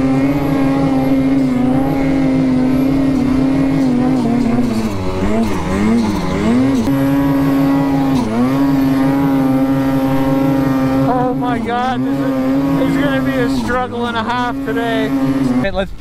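Lynx snowmobile engine running at steady high revs while pushing through deep snow. Its pitch dips and climbs back several times as the throttle is eased and reapplied.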